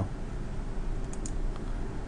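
A few faint clicks of a computer mouse a little past a second in, over a steady low hum.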